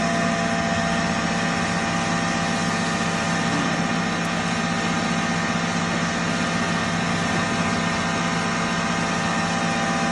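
A 5 HP stoneless atta chakki (pulveriser flour mill) running steadily: a constant machine hum with several steady tones that holds level throughout.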